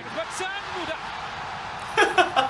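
Televised football match audio: a commentator's voice heard faintly over steady stadium crowd noise.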